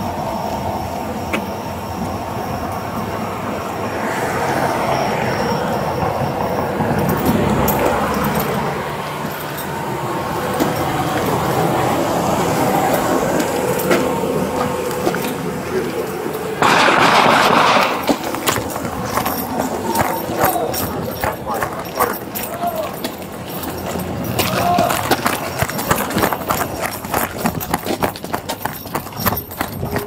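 Footsteps and the rattle of duty gear picked up by a body-worn camera on a walking officer, with a loud rustle of clothing against the microphone about seventeen seconds in. A steady hum runs beneath the first part.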